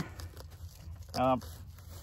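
Faint handling noise from a nylon plate carrier and tourniquet pouch as the pouch is fitted: light scuffs and small clicks, with a brief spoken "uh" a little past the middle.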